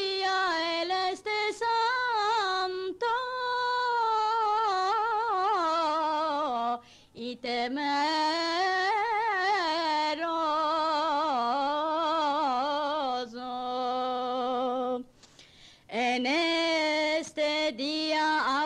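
A woman singing solo and unaccompanied in Judeo-Spanish: a recorded Shabuot compla in the style of classical Ottoman music, its melody richly ornamented with wavering turns. The line breaks off twice, briefly, about 7 and 15 seconds in.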